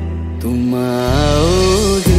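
A Bollywood romantic Hindi film song playing: a long melody line that slides up and down enters about half a second in, over sustained bass notes.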